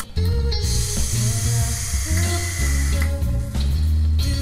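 Outro music with a heavy bass line. A bright hissing wash swells in about half a second in and drops away around three seconds.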